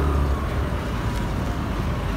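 Motorbike engine and road noise from the pillion seat while riding in traffic. The engine's low hum fades about half a second in, and a faint whine falls slowly in pitch as the bike slows into a turn.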